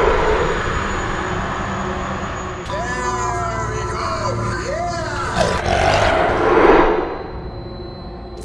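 Horror-trailer sound design: a low rumbling drone with held tones. From about three seconds in come a few seconds of muffled moaning voices whose pitch rises and falls, as from a film playing on a laptop, then a swelling noise peaks and dies away near the end.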